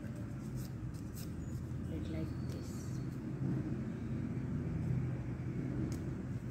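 Thin paper being folded and creased by hand, with a few short rustles, over a steady low background rumble.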